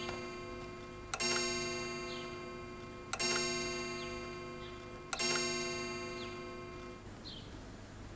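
A bell-like chime struck three times, about two seconds apart, each note ringing out and slowly fading. Faint short high chirps sound between the strikes.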